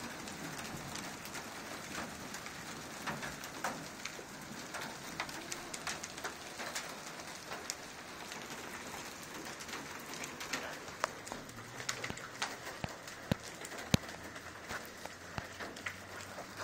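Hail and rain hitting wet pavement and nearby cars: a steady patter laced with irregular sharp cracks of single stones, the loudest about 14 seconds in.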